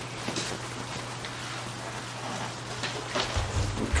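Bare hands squishing and kneading a moist mix of ground turkey and broth-soaked bread stuffing in a bowl: soft, irregular squelching. A low rumble comes in near the end.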